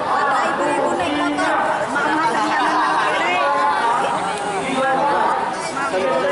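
A crowd of students talking at once, many voices overlapping in steady chatter.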